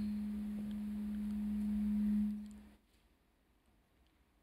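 A single steady pure tone, low in pitch, that swells slightly and then fades away about two and a half seconds in.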